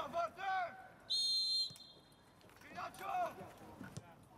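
Referee's whistle blown once, a single short, steady, shrill blast about a second in, signalling the second-half kickoff. Voices shout on the pitch just before and about two seconds after it.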